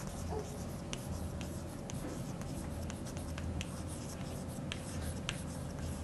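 Chalk writing on a blackboard: quiet scratching strokes with scattered light taps as a line of words is written.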